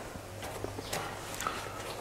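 A few faint, irregular footsteps on a hard floor over a low steady room hum.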